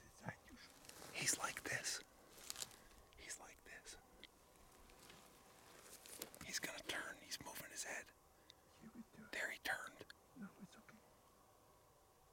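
Hushed whispered speech in short breathy spells, clearest about a second in, around the middle and again near the end, then dying away.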